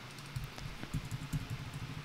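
Faint computer keyboard keystrokes: a scatter of light, irregular taps as a terminal command is edited, over a low steady hum.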